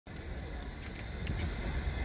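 Outdoor background noise: a steady low rumble with a light hiss and a few faint ticks.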